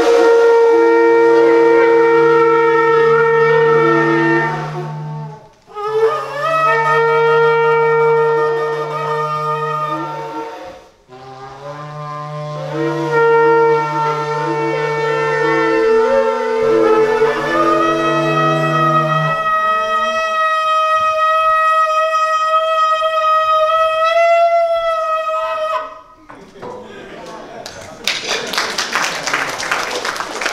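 Several shofars blown together in long sustained blasts, about four of them separated by short breaks, the horns sounding different pitches at once. Then a single shofar holds one long wavering note that rises at its end, and a rush of noise follows near the end.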